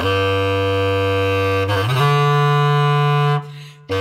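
Solo bass clarinet playing long held notes. One low note is held, then slides up to a higher sustained note about halfway through, which breaks off shortly before the end as a new note begins.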